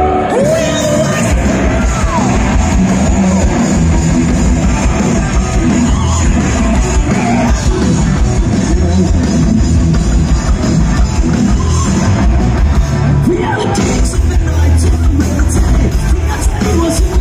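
A rock band playing live through a festival PA in a large tent, with electric guitars, bass and drums and a singer's vocals and yells over them, heard from within the crowd.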